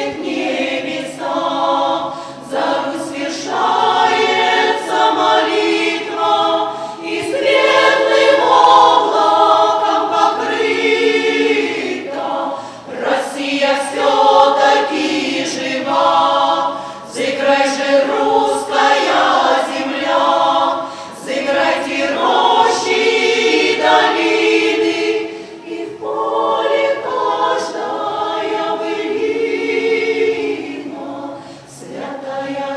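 Women's choir singing a sacred song unaccompanied, in phrases of a few seconds with short breaks between them.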